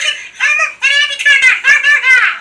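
High-pitched giggling voices: several short laughs one after another.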